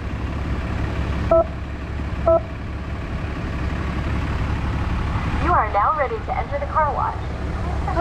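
Two short electronic beeps, about a second apart, from a car wash pay station's touchscreen keypad as digits of a wash code are pressed, over the steady low rumble of an idling car.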